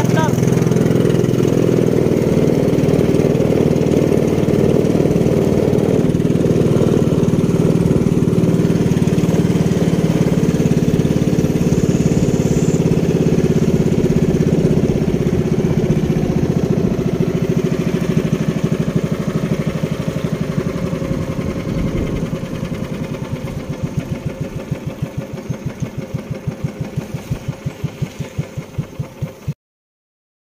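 Engine of a bangka outrigger boat running steadily, then throttled back about halfway through. Its beat slows into separate chugs that come further apart until the sound cuts off suddenly near the end.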